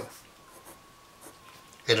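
Felt-tip marker writing on paper: faint, soft strokes as a number is written, over a thin steady high-pitched tone. A man's voice starts again just at the end.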